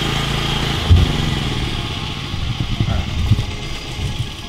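A large, loud portable generator engine running steadily, with a single thump about a second in.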